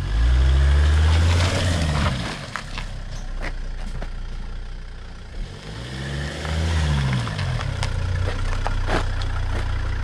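A Volvo V70 estate's engine running as the car manoeuvres at low speed close by, its note rising and falling loudly in the first two seconds and swelling again around six to seven seconds in, with a few light clicks in between.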